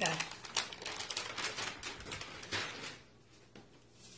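Rustling and scratchy handling noise close to the microphone, a quick jumble of clicks and rubs lasting about two and a half seconds, then dying down to quiet.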